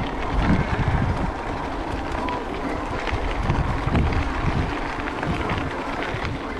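Wind buffeting the microphone of a bicycle rolling along a dirt track, with tyre crunch and light rattling clicks from the bike. The wind gusts are loudest in the first second and again around four seconds in.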